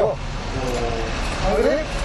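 Steady low road and engine rumble inside a moving car's cabin, with a man's voice cutting in briefly in the second half.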